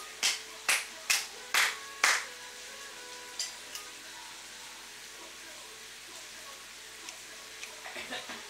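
Meat sizzling in a pan, a steady hiss, with a run of five short, sharp, hissy bursts about twice a second in the first two seconds and two fainter ones a little later.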